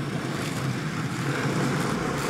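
Skateboard wheels rolling steadily over asphalt, a continuous rumble with no clacks or impacts.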